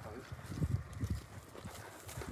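Soft, irregular footsteps on rocky dirt ground, a quick series of low, faint steps.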